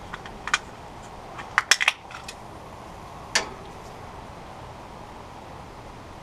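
A handful of small, sharp metallic clicks and clinks in the first three and a half seconds, bunched around the middle, as a small brass valve fitting is handled and threaded by hand, over a steady faint background noise.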